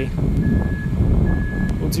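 Vehicle reversing alarm beeping: a steady high tone repeating a little more than once a second, over wind buffeting the microphone.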